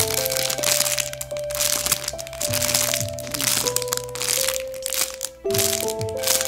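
Clear plastic bag around a foam squishy toy crinkling and crackling as it is handled and squeezed, over background music playing a slow melody of held notes.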